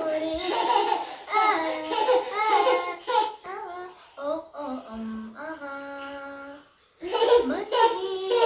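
A young girl singing a song unaccompanied, her voice gliding between notes and holding one long steady note about five and a half seconds in, with a brief pause near the end.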